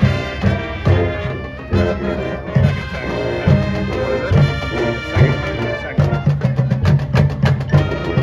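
Marching band playing, a brass melody over regular low drum hits and mallet percussion, ending in a run of quick, evenly spaced accented hits, about four a second, in the last two seconds.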